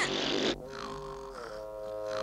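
A short raspberry blown with the tongue out, lasting about half a second, followed by soft held music notes.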